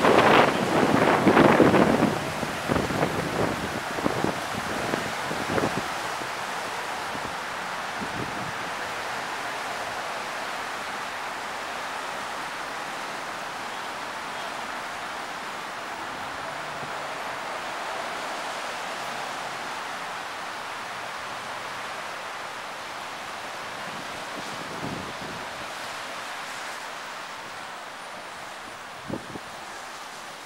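Wind buffeting the microphone in strong gusts for the first couple of seconds, then a steady rush of wind through the street trees.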